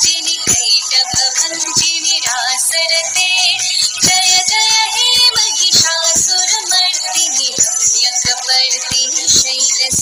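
Background song with a singing voice over a steady beat.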